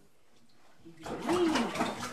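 Near silence for about a second, then a high-pitched voice rising and falling in pitch without clear words, over a rustling, rattling noise.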